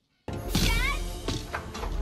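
Film soundtrack: background score playing under a voice calling "Dad?", starting after a split second of dead silence.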